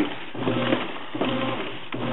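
Whirlpool WTW4950XW1 low-water top-load washer running its wash cycle, turning a load of vinyl shower curtains in the drum: a steady mechanical whir with a faint low tone that pulses roughly every half to three-quarters of a second. The owner says the machine puts in too little water for the load to get washed.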